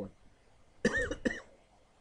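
A man coughs about a second in: a short, sharp cough in two quick bursts.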